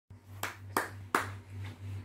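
A baby's palms slapping a quilted play mat: three quick sharp slaps within about a second, the third the loudest.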